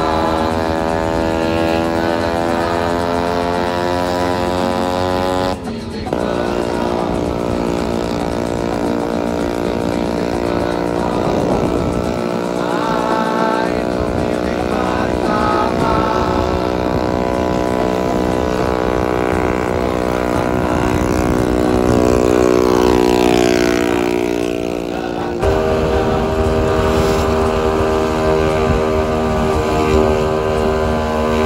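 Scooter engine running at a steady pitch with a continuous droning hum, breaking off abruptly twice, about six seconds in and about five seconds before the end.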